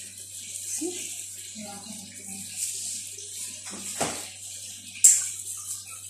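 Handling sounds as a hand in a disposable plastic glove places strawberry slices on a bowl of soaked oats: a soft knock about four seconds in and a sharp click about a second later, over quiet background voices.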